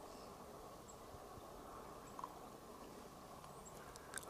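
Near silence: faint outdoor background hiss, with one brief faint sound about two seconds in.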